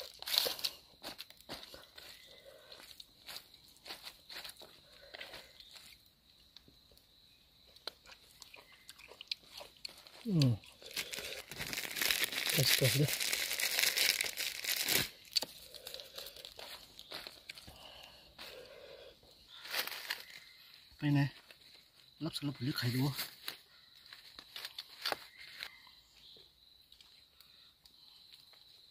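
Hand squeezing and mixing a pile of shredded food on a banana leaf: crinkly rustling and crunching in short bursts, densest for a few seconds in the middle.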